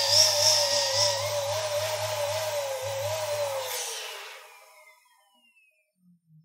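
Electric balloon pump inflating a latex balloon: a low motor hum with a wavering high whine over it. The hum stops a little under four seconds in and the whine dies away about a second later.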